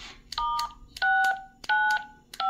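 Retevis RT85 handheld radio sending DTMF tones as its keypad is pressed: three short two-tone beeps about two-thirds of a second apart. They are a DTMF command to the AllStar node telling it to power down.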